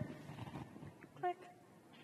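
A pause in a talk, with low room sound and a faint brief rustle at the start, then a single short spoken word ("click") about a second in.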